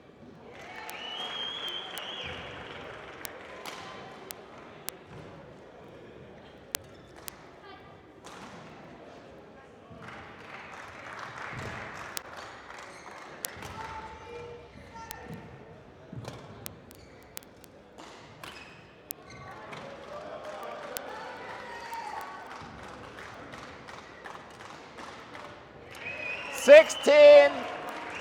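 Badminton rally: sharp clicks of rackets striking the shuttlecock every half second to a second, over the murmur of voices from other courts and spectators in a large hall. Near the end a loud voice calls out, the umpire announcing the score.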